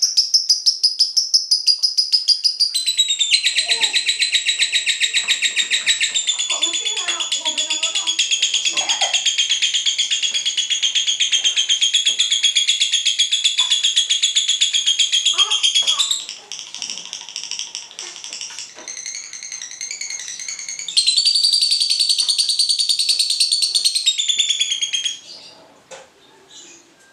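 A cinderella lovebird's ngekek: a long, very rapid, high-pitched chattering trill held for about sixteen seconds. Softer, broken chatter follows, then a second loud trill of about four seconds that stops just before the end.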